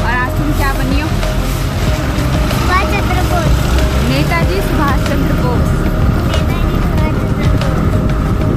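Street traffic noise: a steady low rumble of vehicles, with voices talking over it.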